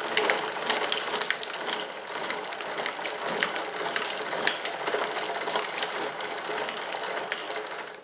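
Veritas twin-screw woodworking vise being cranked by its spinning wooden handles, its chain-linked screws turning. It makes a steady mechanical rattle with sharp clicks about twice a second, and fades out near the end.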